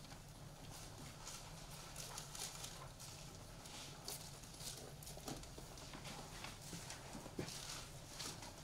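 Thin Bible pages being turned by hand: a scattered series of faint, light paper rustles and flicks, over a low steady room hum.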